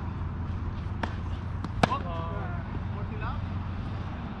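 A sharp tennis ball impact just under two seconds in, the loudest sound, with a fainter knock about a second in, followed by a player's voice calling out briefly; a steady low hum lies underneath.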